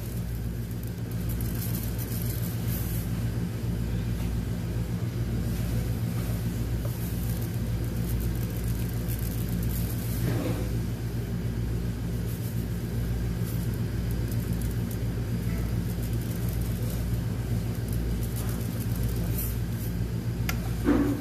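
A steady low hum.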